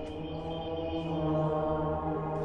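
Background music: a sustained, droning chant-like tone held steady, swelling slightly in the middle.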